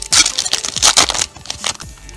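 Yu-Gi-Oh Star Pack booster wrapper torn open and crinkled by hand: a quick run of sharp crackles for about the first second, then quieter rustling.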